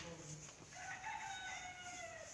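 A rooster crowing once: one long drawn-out call, starting a little under a second in and dropping in pitch at its end.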